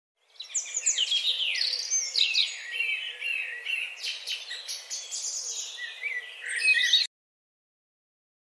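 Birdsong: many quick chirps and whistled phrases overlapping, cutting off abruptly about seven seconds in.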